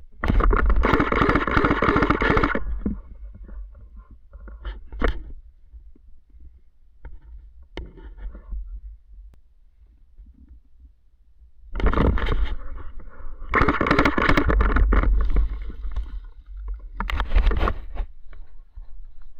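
Rustling and scraping of clothing and gear rubbing against the body-worn camera's microphone as a prone player shifts in the undergrowth, in loud bursts of a few seconds with a deep rumble, and a few sharp clicks in the quieter stretch between.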